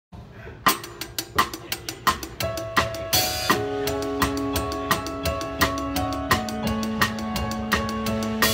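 A drum kit played with sticks in a live band, starting under a second in with a steady beat of strokes. There is a cymbal crash about three seconds in, and held pitched notes from the rest of the band sound under the drums from then on.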